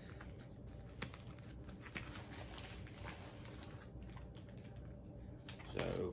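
Rustling, crinkling and small irregular clicks of packaging being handled as a small mail-order parcel is opened, with a brief louder sound just before the end.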